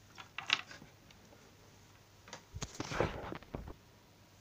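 Handling noise: a couple of light clicks about half a second in, then a busier run of clicks and rustling over the second half.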